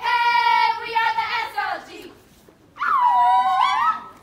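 Women's voices singing or calling out two long held notes. The first is held steady for almost two seconds; after a short pause the second comes, dipping and then rising in pitch before it stops.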